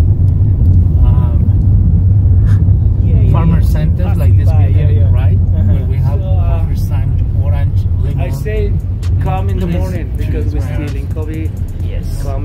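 Steady low rumble of a car's engine and tyres, heard from inside the cabin while driving, with voices talking over it. The rumble eases in the last few seconds.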